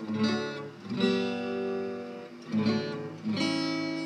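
Steel-string acoustic guitar strummed: four chords, the second left ringing for over a second.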